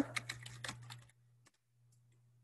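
Computer keyboard typing: a quick run of keystrokes lasting about a second.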